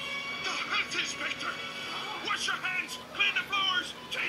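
Cartoon soundtrack playing from a television: music under high-pitched character voices.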